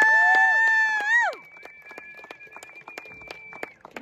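An announcer calls out over the PA in one long drawn-out shout lasting just over a second. Scattered hand claps follow, with a faint steady high whine underneath.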